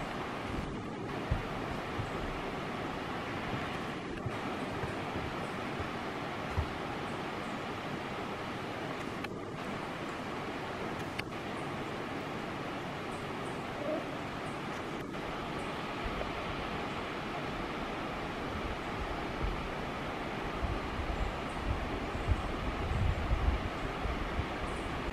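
Distant waterfall: a steady, even rushing of falling water heard from across a gorge. Some low wind buffeting on the microphone comes in near the end.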